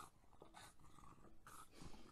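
Faint sounds from a French bulldog, two short breathy bursts, about half a second in and again near the end.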